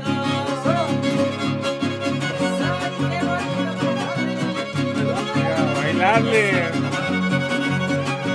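Huasteco string trio playing live: a violin melody with slides over strummed jarana and huapanguera chords in a steady rhythm.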